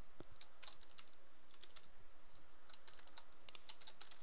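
Typing on a computer keyboard: a run of keystrokes at an uneven pace.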